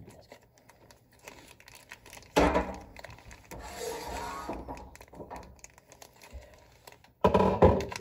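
Plastic food packet crinkling and tearing as it is pulled open by hand. Two louder bursts come about two and a half seconds in and near the end.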